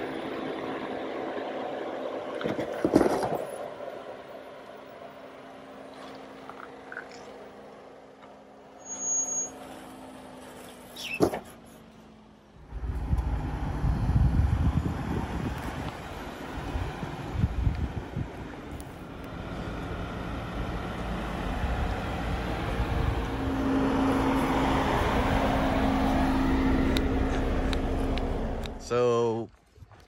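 Jeep Wranglers driving slowly off-road over soft sand, engines running at low speed, with two sharp knocks in the first half. About twelve seconds in, a louder low rumble starts suddenly and runs on with a steady engine hum until shortly before the end.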